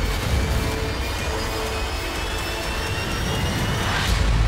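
Dramatic trailer score: a deep rumble under thin high tones that rise slowly, building to a sharp hit at the very end.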